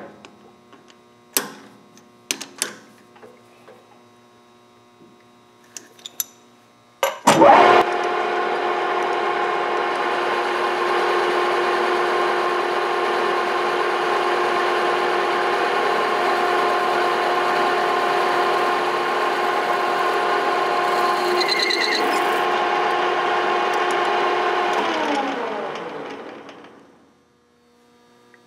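A few clicks and knocks as a steel bearing roller is set in a metal lathe's chuck. About seven seconds in, the lathe starts and runs with a steady hum of several tones while light turning passes are taken on the annealed roller. Near the end it is switched off and the tone falls as the spindle spins down.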